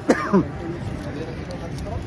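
A man clearing his throat, a short double rasp near the start, over a steady low outdoor rumble.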